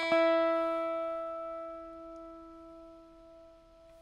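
Electric guitar plucking a single high E note that rings and slowly fades over about four seconds. The open first string and the fifth fret of the second string are being matched in unison to tune the guitar.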